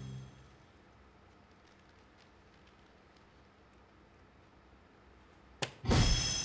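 Soft-tip dart striking a DARTSLIVE electronic dartboard near the end: a sharp click, then the board's loud electronic hit sound with ringing tones. Before it, the previous hit sound fades out in the first half-second, followed by a few seconds of near silence.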